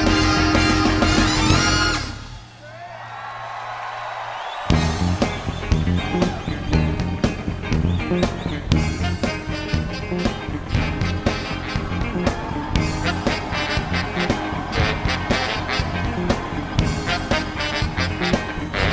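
Live soul band playing. The band stops dead about two seconds in, leaving a single low held note, then the full band comes back in on the beat a couple of seconds later and plays on.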